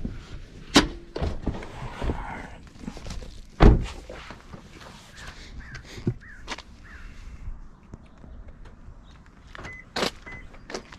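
A car door slamming shut about three and a half seconds in, the loudest sound, after a lighter knock about a second in, with rustling and handling noise around them as the driver gets out with a backpack.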